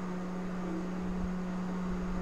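A steady, low-pitched hum over faint hiss, holding one pitch throughout.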